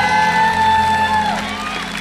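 A woman singing a dangdut song to live keyboard backing: she holds a long high note that falls away after about a second, then gives a short rising slide.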